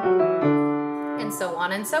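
Schultz acoustic piano: both hands play the last notes of a five-tone scale in octaves, stepping back down to the starting note. That note is held and rings out for about a second before a woman's voice comes in near the end.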